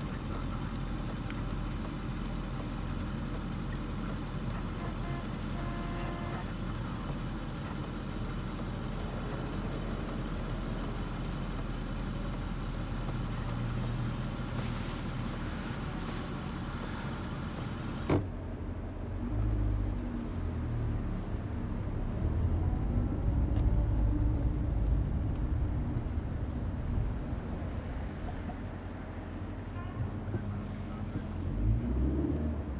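Taxi cab interior while driving: steady engine and road noise with a light, regular ticking about twice a second. About two-thirds of the way in, a sharp click is followed by a heavier, uneven low rumble of traffic.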